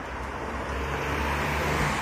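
A road vehicle passing by, its engine and tyre noise rising to a peak near the end.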